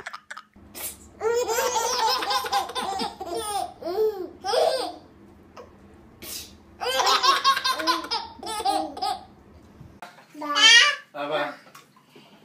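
Babies laughing and babbling in several bursts, with short, high vocal bursts near the end.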